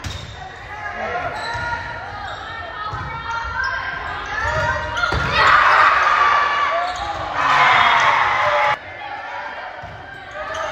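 Volleyball rally in an echoing gymnasium: the hollow smacks of the ball being served, passed and hit, under steady chatter and calls from players and spectators. Two loud bursts of crowd shouting come about five and seven and a half seconds in, the second cutting off sharply.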